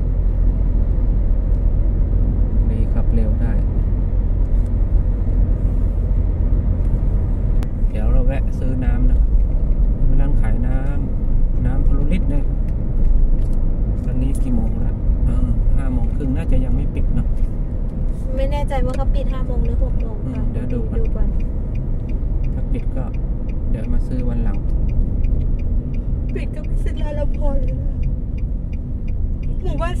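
Steady low rumble of engine and tyre noise inside a moving car, with people talking on and off over it.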